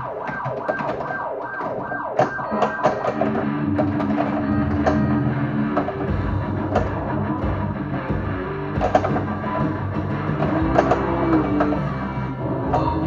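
Getaway: High Speed II pinball machine in multiball, its PinSound board playing a custom music mix through upgraded speakers, with sharp clacks from the balls, flippers and targets on the playfield every second or two.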